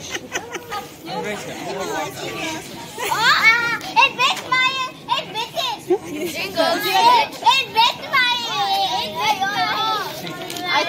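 Several children's voices, high-pitched and overlapping, chattering and calling out excitedly.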